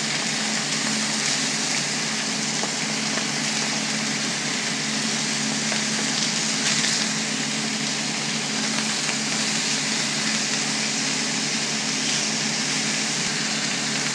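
Skin-on sockeye salmon fillets sizzling steadily in a hot frying pan, with a steady low hum underneath.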